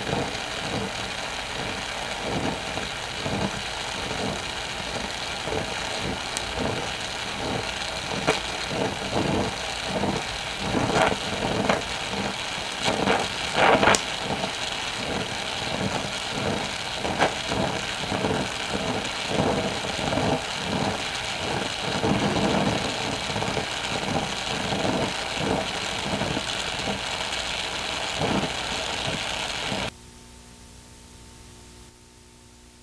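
Oxy-acetylene torch flame running with a steady hissing rush, broken by irregular small pops and crackles, as it fuses the thin edges of two steel farm disc blades together; the crackling grows denser for a few seconds midway.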